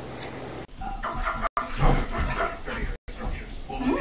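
A dog barking and whimpering, with several abrupt cuts.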